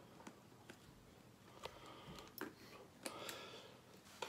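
Near silence, with a few faint clicks and rustles from a small plastic deli cup as its snap-on lid is taken off and the cup is handled.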